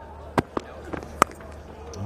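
Stump-microphone sound of a cricket delivery over a steady stadium hum: a couple of light knocks, then a single loud, sharp crack of the bat striking the ball about a second in.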